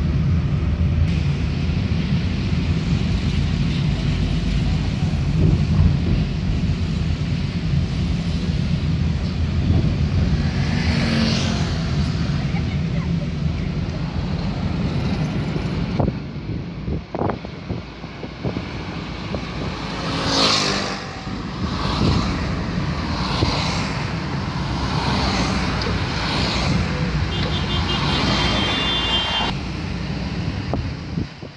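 Car driving: a steady engine and road rumble heard from inside the cabin. About halfway through, the sound changes to lighter tyre and road noise that swells in a run of short whooshes about a second and a half apart.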